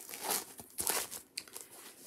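Rustling and crinkling of a paper cross-stitch chart and a piece of 18-count Aida fabric being handled, in several uneven rustles.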